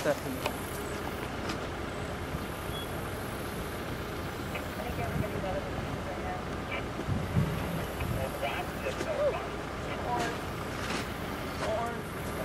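Off-road Jeep engine running at low speed as it crawls over rough, rocky ground, with a few short knocks.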